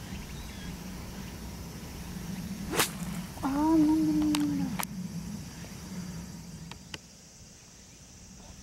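Pitching wedge striking a golf ball on a full fairway shot: one sharp crack of club on ball almost three seconds in. A drawn-out voice follows for about a second, and then a few faint clicks.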